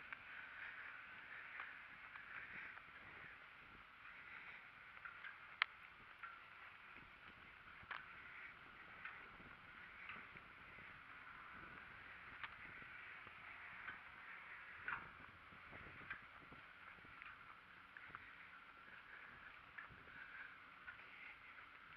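Near silence: a faint outdoor background hiss with a few soft, scattered ticks, one a little sharper about five and a half seconds in.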